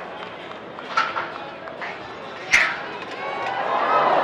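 Rodeo bucking-chute gate banging open with one sharp metal crack about two and a half seconds in, after a smaller knock a second earlier, then crowd noise building toward the end as the steer comes out.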